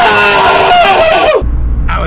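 A man's loud, drawn-out yell that rises in pitch at the start, holds and then falls, cutting off about one and a half seconds in. It is followed by the low, steady road rumble inside a moving car.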